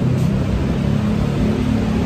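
Steady low rumble of city road traffic, engines and tyres of passing vehicles.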